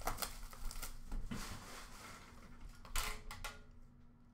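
A cardboard hockey card box being handled and turned on a counter: a run of light clicks and rustles, with a louder cluster of clicks about three seconds in.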